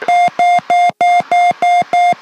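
Autopilot disconnect alert in a Piper Saratoga II TC: a rapid, even series of high beeps, about three a second, the normal warning that the autopilot has just been switched off.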